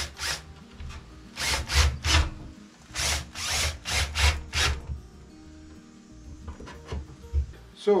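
Handheld power driver run in short bursts, about three and then a quicker run of six, tightening fittings on the water pump's plumbing.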